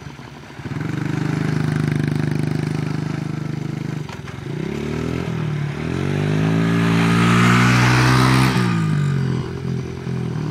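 Small mini dirt bike engine revving and holding, dropping off about four seconds in, climbing again and falling away near the end. A hiss of the tyre sliding on loose dirt rises over it between about seven and eight and a half seconds in.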